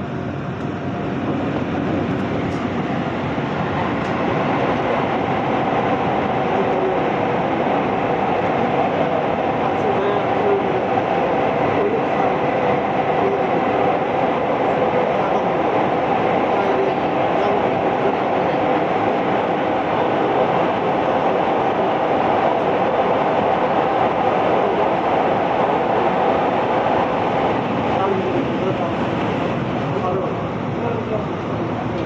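Steady running noise of a Gyeongchun Line electric commuter train heard from inside the passenger car: wheels rumbling on the rails. The noise grows louder about a second in and stays loud while the train runs through a tunnel, then eases near the end as it comes out.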